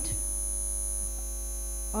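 Steady low electrical mains hum with a thin high whine above it.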